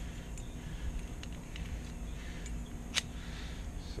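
Small metallic clicks from a brass profile lock cylinder and its key being handled, with one sharper click about three seconds in, over a steady low rumble.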